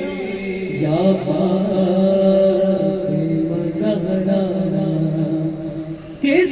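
A young male reciter chanting a noha (Shia lament) into a microphone, holding long, drawn-out notes with brief slides between them.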